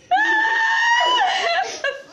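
A child's high-pitched scream, held steady for about a second, then dropping lower before breaking off.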